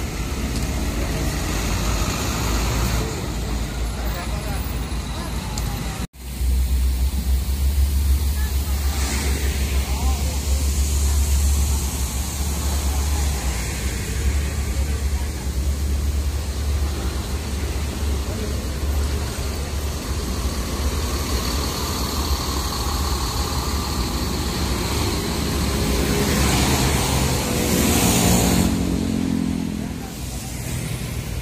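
Diesel coach engines idling close by: a deep, steady rumble, broken by a brief cut about six seconds in. Near the end it grows louder, with a rising engine note as an engine revs.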